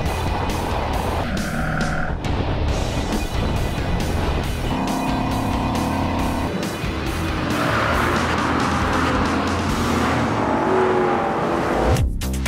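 Ford Mustangs running hard on a race track, heard through onboard cameras: engine note and tyre and wind noise, with a pitched engine tone coming through twice. Background music with a steady beat is mixed over it.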